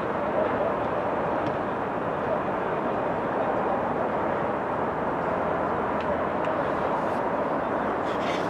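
Steady, even outdoor background noise with no distinct events.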